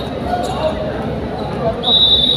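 Indoor gym crowd noise with faint voices, then a referee's whistle blown near the end: one steady, high note that signals the serve.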